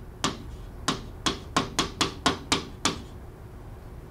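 Pen tip tapping and clicking against a display screen while handwriting a short note: about nine sharp, unevenly spaced taps over roughly three seconds, then quiet room tone.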